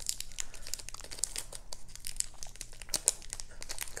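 Clear plastic wrapping and adhesive tape around a stack of trading cards crinkling and crackling in a run of short, irregular crackles as fingers pick and peel at the tape. The tape is sticking and will not lift cleanly.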